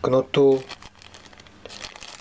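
Small clear zip-lock plastic bag crinkling softly as fingers handle and turn it, with a few slightly sharper crackles near the end.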